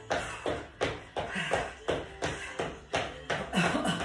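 Quick, even footfalls of trainers landing on a wooden floor, about three a second, from a split shuffle done in place.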